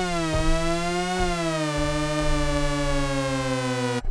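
Surge software synthesizer holding one sustained, buzzy classic-oscillator tone played legato in mono mode, its pitch gliding between notes with fingered portamento. It slides down, rises slightly about a second in, slides down again and holds, then cuts off at the end.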